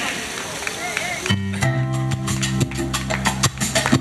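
A live salsa band strikes up about a second in: a held chord from keyboard and bass with sharp percussion hits, after a moment of voices.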